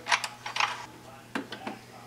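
A few light, scattered clicks and taps of hands handling metal parts at the lathe chuck, over a faint steady hum.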